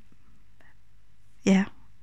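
A pause in a woman's speech with only faint low background noise, then one short spoken word ("ja") about one and a half seconds in.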